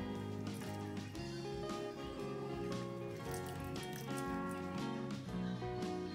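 Background music: a melody of held notes over a light, regular beat.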